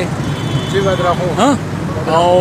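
Street traffic noise, a steady low rumble, with a man's voice speaking briefly about a second in.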